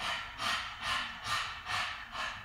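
A person panting hard through the open mouth with the tongue out: quick, even breaths in and out, about two and a half a second.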